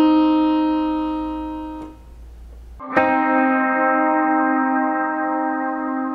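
A minor third, C and E-flat, rings out on a Yamaha digital keyboard and fades over the first two seconds. About three seconds in, an electric guitar strikes the same C–E-flat minor third on two strings together and lets it ring steadily.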